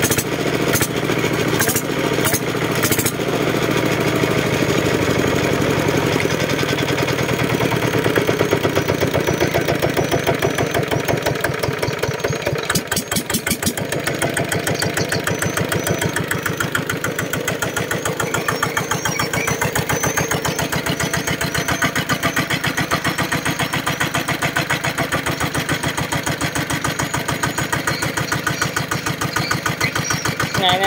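Kubota ER65 single-cylinder diesel engine running. It is louder and busier for about the first twelve seconds, then settles into a steady, even chug.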